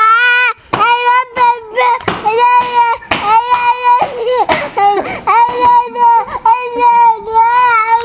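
A person close to the microphone laughing hysterically in a long run of high-pitched, held, wavering squeals, each about half a second to a second long, with short gasping breaths between.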